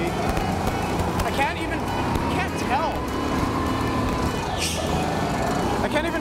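A go-kart driving at speed, its motor running with a steady hum and a thin, even whine throughout, with a few short rising-and-falling squeals over it.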